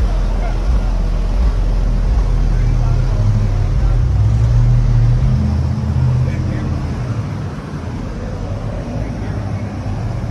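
1973 Chevrolet Caprice's V8 engine idling with a deep, steady rumble, swelling a little in the middle and easing off after about six seconds.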